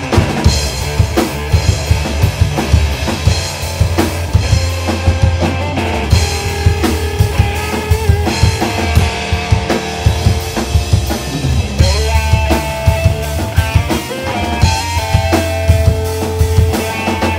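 A rock band playing live: a drum kit beating steadily with kick and snare under bass guitar and electric guitar, with held guitar notes ringing over the beat from about six seconds in.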